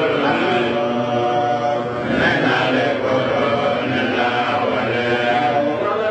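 A man's voice chanting in long, held melodic phrases: Islamic religious chanting.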